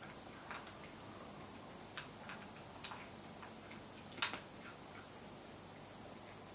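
A cat eating dry kibble from a plastic bowl: a few faint, scattered crunches and clicks, the loudest a quick double crunch about four seconds in.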